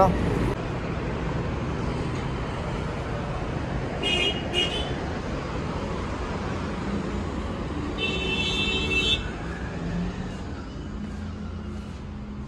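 Steady road traffic noise with vehicle horns: two short toots about four seconds in and a longer honk lasting about a second near eight seconds in.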